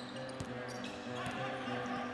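Basketball game sound in an arena: a basketball dribbling on the hardwood court over crowd chatter, with steady held tones beneath.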